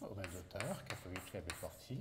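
Chalk tapping and scraping on a blackboard as letters are written, a few short sharp clicks, alongside a man's soft speech in French.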